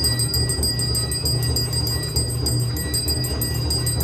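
Temple bells rung rapidly and continuously for the aarti, about seven strokes a second, with a steady ringing over them. A loud, steady low throbbing runs underneath.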